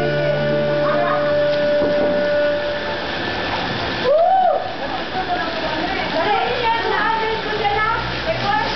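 Voices and water splashing from people swimming in a pool, with music holding steady notes that fade over the first three seconds; about four seconds in, one loud rising-and-falling voice call stands out.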